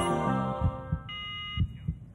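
The tail end of a TV health show's intro theme music: the synth chords fade out over low repeated thumps, and a short bright electronic tone sounds about a second in.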